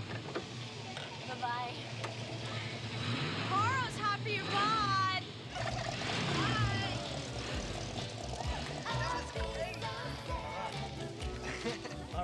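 Background music with young people shouting and laughing in high, wordless whoops, loudest about four to five seconds in.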